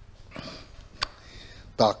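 A man sniffs in sharply close to a handheld microphone. About a second in there is a single short click, and he starts speaking again near the end.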